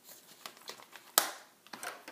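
A rubber stamp and small craft supplies being handled and set down on a cutting mat: light rustling and tapping, with one sharp click a little past the middle and a few more taps near the end.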